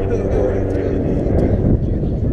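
Wind buffeting the microphone, a steady low rumble, with voices of people nearby mixed in.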